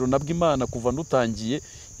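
Crickets trilling steadily at a high pitch beneath a man's speech.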